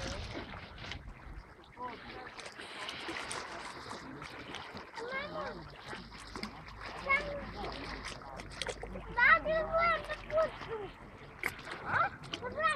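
Sea water splashing lightly around swimmers, with a child's and adults' voices calling out, loudest a couple of seconds before the end.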